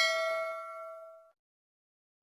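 Notification-bell chime sound effect: one bright ding with several ringing tones, fading out over about a second and a half.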